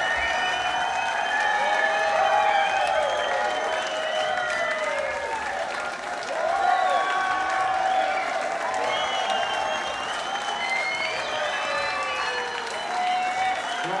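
Concert audience applauding and cheering, with many voices whooping and shouting over steady clapping.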